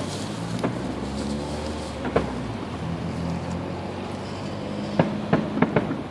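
Distant fireworks going off: single sharp bangs about half a second and two seconds in, then a quick run of four or five near the end, over a steady low engine hum of nearby traffic.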